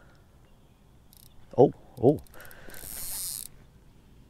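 Fishing reel giving out a steady high buzz for about a second as line is pulled off: a fish has taken a bait.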